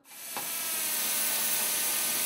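Steady hissing machine noise from a factory roller machine working punched metal sheet. The noise fades in over the first half second, then holds level.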